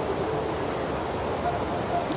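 Steady hiss of background noise, even and unchanging, with no distinct event in it.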